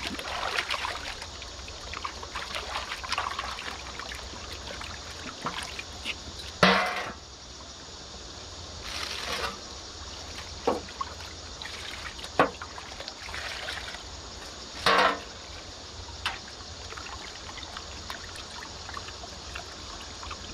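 River water sloshing and trickling as a metal pot and tray are dipped and emptied to rinse snails, with a few short louder splashes and pours.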